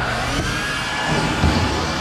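Shop vac starting up and running steadily: a rushing noise with a thin, high whine on top.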